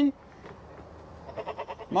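Goat kid eating feed pellets from a pan: soft, quick crunching clicks toward the end of a quiet spell.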